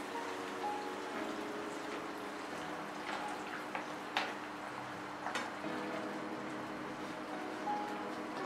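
Coconut-milk curry simmering in a non-stick frying pan, with a few light clicks of a ladle against the pan between about three and five seconds in, over a steady low hum.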